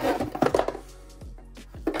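A cardboard box is handled, with a flurry of knocks and scrapes in the first second. Under it, and alone after that, plays quiet background music with held notes.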